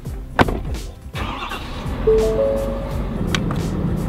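Ford pickup truck's engine being started: a click, then the engine turns over and catches about two seconds in, settling into a steady idle.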